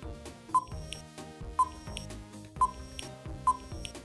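Quiz countdown-timer sound effect: four short high beeps, about one a second, over soft background music.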